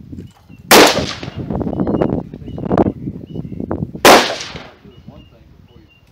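Two loud rifle shots, one about a second in and one about four seconds in, each with a short fading echo, and a fainter shot between them.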